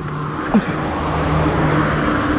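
Yamaha Mio M3 scooter's small single-cylinder engine running at low speed, a steady hum under wind and road noise, as the scooter slows to pull over.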